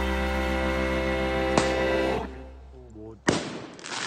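Background music with guitar fading out a little after two seconds in, then near the end a single sudden, loud bang of an aerial firework bursting, trailing off in a hiss.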